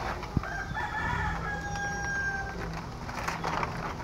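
A rooster crowing once: one drawn-out call beginning about a second in, ending on a long held note. A sharp click comes just before it.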